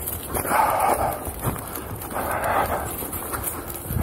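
English springer spaniel huffing hard as it strains against its harness and lead, three breathy huffs about a second and a half apart, with footsteps on a wet, muddy path.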